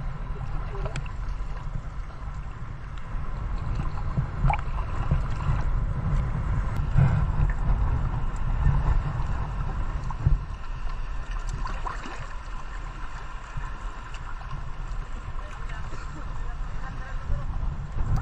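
Shallow seawater sloshing and wind on a camera held at the waterline, a steady low rumble, with faint voices of people in the background.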